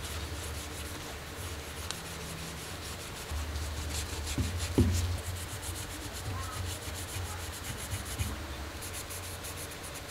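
Cloth rubbing over a vintage Konica L camera's metal body in quick repeated wiping strokes, with a louder knock about halfway through as the camera is handled.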